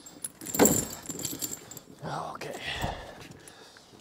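Heavy steel tractor tire chains clinking and rattling as they are hauled up and draped over a large rear tractor tire, with the loudest clatter about half a second in.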